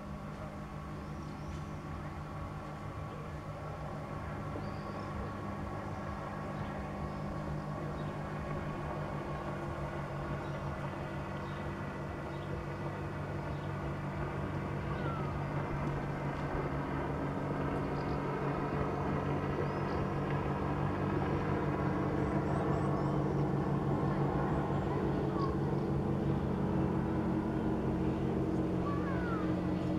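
A motorboat engine running steadily, growing gradually louder as it comes nearer, its pitch shifting a little about two thirds of the way in. A few faint high chirps sound above it.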